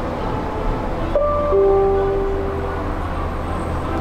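Steady low rumble of a Disney Skyliner gondola cabin riding the cable, heard from inside the cabin. About a second in, a few held musical notes sound together over it and fade out before the end.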